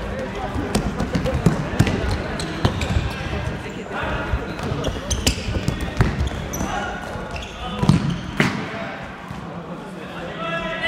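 Futsal ball being kicked and bouncing on a sports hall floor: a scatter of sharp knocks, with players' and spectators' voices calling out in the hall.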